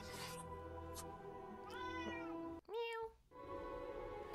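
A domestic tabby cat meows twice, about two and three seconds in, over sustained orchestral film music that drops away briefly for the second meow.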